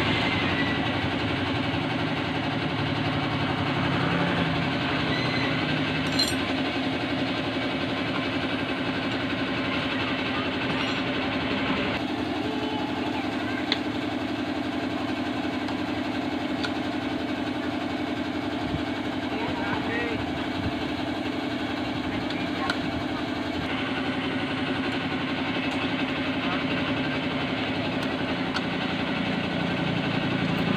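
A motor running steadily with an even hum, its pitch holding level throughout, with voices talking underneath.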